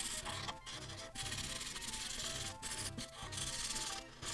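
Marker tip rubbing back and forth on paper while coloring in an area, a series of strokes broken by a few brief pauses. Soft background music plays underneath.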